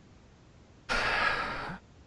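A person's breathy exhale, like a sigh, close to a microphone, lasting a little under a second about halfway through.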